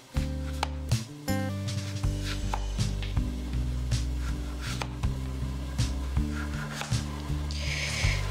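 Background music with low held notes, over which a chef's knife slices through an onion and taps a plastic cutting board in a series of short clicks.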